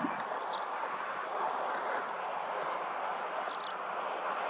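Two short, high chirps from a small bird, one about half a second in and one near the end, over a steady rushing background noise.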